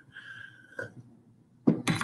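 A person sipping hot coffee from a ceramic cup, drawing it in with a thin, steady whistling slurp and a small click. Near the end comes a short, loud burst of noise.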